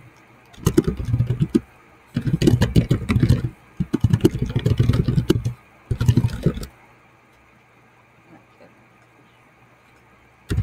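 Typing on a computer keyboard close to the microphone: rapid key clatter in four quick bursts, stopping about two-thirds of the way through.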